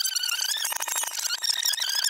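Audio played in reverse and sped up: garbled, high-pitched squeaky chatter with a rapid pulsing pattern. The lower part of the sound drops away right at the start.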